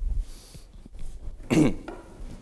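A person coughing once, a short sharp cough about a second and a half in, with a few low thuds near the start.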